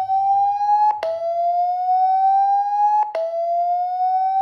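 A Xiaomi Poco X3's own loudspeaker playing its speaker-cleaning tone at full volume. The loud tone slowly rises in pitch and drops back about every two seconds, with a short click at each reset. The tone is meant to shake dust and water out of a blocked speaker.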